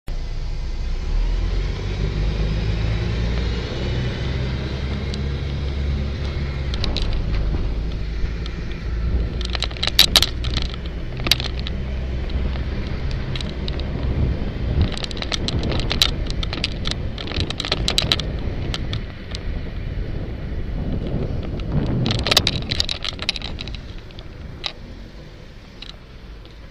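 Ride noise picked up by a bicycle-mounted camera: a steady low rumble of traffic and air on the microphone through the first half, fading about halfway. Over it come three spells of sharp rattling and clattering as the bike and camera mount shake over bumps in the road.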